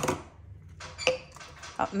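Plastic baby bottles handled and knocked against a stone countertop by a capuchin monkey: a sharp knock at the start and another light knock with a short ring about a second in.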